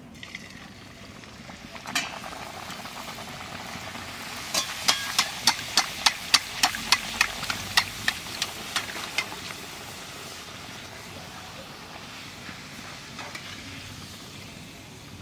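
A lentil-stuffed luchi (dal puri) deep-frying in hot oil in an aluminium karahi: a knock about two seconds in as it goes in, then steady sizzling. From about four and a half seconds in, a run of about a dozen sharp taps, two or three a second, as a perforated metal spoon presses the luchi down so it puffs. The sizzling then carries on, a little quieter.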